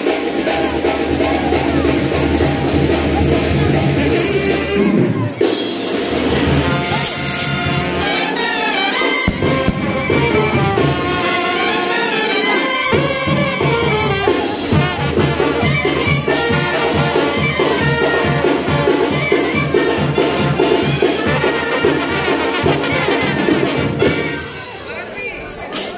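Loud brass band music with a steady beat.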